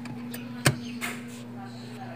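A sharp click about two-thirds of a second in, over a steady low hum.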